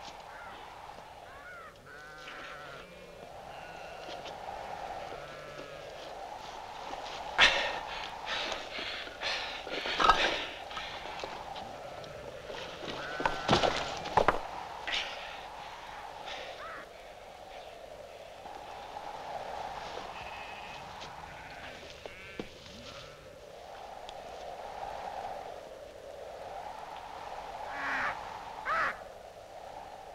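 Wind moaning steadily, rising and falling, with sheep bleating now and then. Sharp knocks and scuffs come in a cluster from about seven to fifteen seconds in and twice more near the end, as a man scrambles over rough stone and grass.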